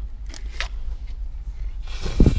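A plastic tube of effervescent vitamin C tablets being handled: a couple of short clicks about half a second in, then a rustling scrape near the end as its snap-on cap is pulled off. A low steady rumble runs underneath.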